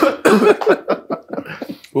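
A man coughing in a run of short choking coughs that grow fainter, with a brief laugh near the end.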